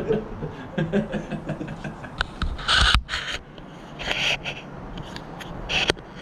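Rubbing and scraping of the camera being handled, with scattered clicks and a few short hissy bursts. Faint voices can be heard early on.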